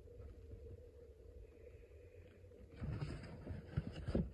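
Mostly quiet room tone, then from about three seconds in faint rustling and scraping of a cardboard shoebox lid being handled and shut.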